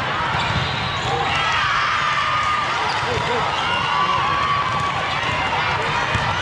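Busy indoor volleyball hall: volleyballs being struck and bouncing across several courts, with many voices calling and talking over each other, steady and loud throughout.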